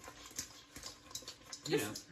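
Sauced chicken wings tossed in a stainless steel mixing bowl: a run of irregular soft clicks and knocks as the wings slide and hit the metal.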